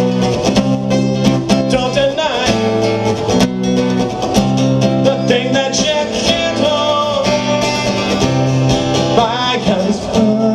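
Live acoustic song: a steel-string acoustic guitar strummed in a steady rhythm, with a man's voice singing over it.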